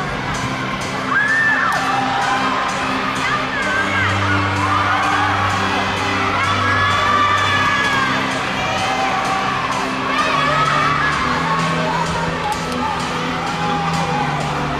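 A crowd of children shouting and cheering, with music with a steady beat playing underneath.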